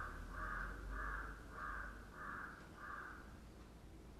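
A crow cawing in an even run of about six harsh caws, a little over half a second apart, stopping about three seconds in.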